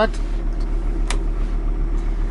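VW T4's five-cylinder diesel engine idling, a steady low rumble heard from inside the cab, with a single click about a second in.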